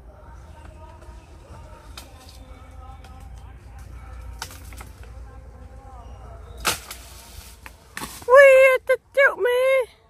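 A long bamboo pole strikes the long flat seed pods of an Oroxylum indicum tree with a sharp crack about two-thirds of the way in and a smaller knock a second later. Near the end a loud, drawn-out wavering vocal call sounds twice.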